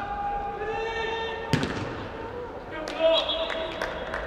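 Soccer players shouting in an echoing indoor hall, with long held calls. A sharp thud of a kicked ball comes about one and a half seconds in, and several lighter knocks follow near the end.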